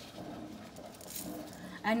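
Low, steady background noise with no clear event, then a voice begins speaking near the end.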